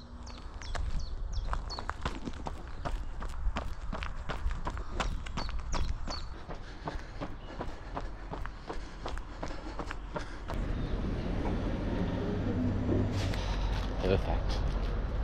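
Running footsteps on pavement, a quick even stride of about three footfalls a second. About ten seconds in the footfalls fade under a steadier low noise.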